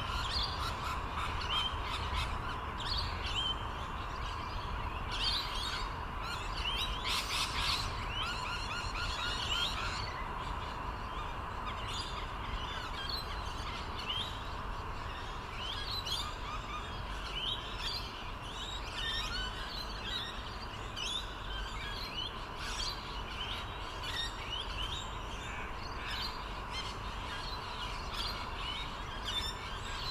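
Birds chirping: many short rising calls throughout, busiest about seven to eight seconds in, over a steady low background rumble.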